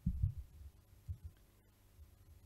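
A few soft, low thuds picked up by a desk microphone, with the strongest right at the start and smaller ones about a second in. They sound like knocks or handling on the desk or microphone.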